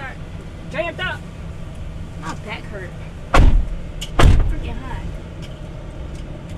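Two car doors slamming shut, heard from inside the SUV's cabin, one a little under a second after the other.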